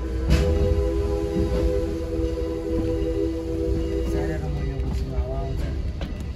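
Steam locomotive whistle blown for a road crossing: one long blast sounding a chord of several steady tones, which stops about four seconds in. Underneath is the low rumble of the train running.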